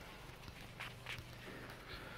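Faint footsteps on a concrete floor: a handful of light, irregular steps.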